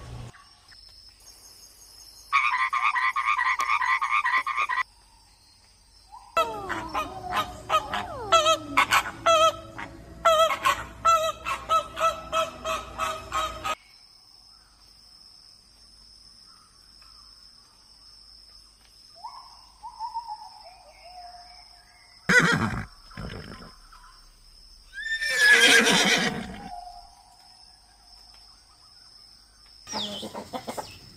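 A run of separate animal calls with quiet gaps between them. First a frog croaking in a steady trill for about two seconds, then several seconds of rapid repeated calls, and near the end a short, loud whinny-like call.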